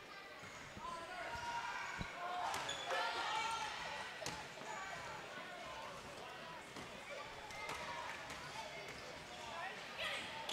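Basketball bounced a few times on a hardwood court in a large gym ahead of a free throw, with faint echoing voices of players and spectators in the hall.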